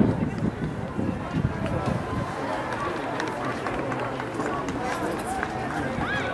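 Indistinct chatter of several people talking at once outdoors, with no single voice clear, holding at a steady level.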